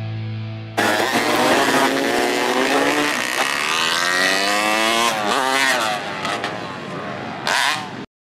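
Music fades out, then motocross dirt bike engines rev hard, their pitch repeatedly rising and falling with more than one engine heard at once. A short loud burst comes near the end, and the sound cuts off suddenly.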